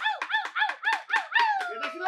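Wooden dance sticks clacking together in a quick, even rhythm. Over them comes a string of short, high, pitched calls, each rising and falling, about five a second.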